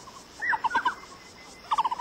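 A bird calling in two quick runs of short repeated notes, one about half a second in and another near the end.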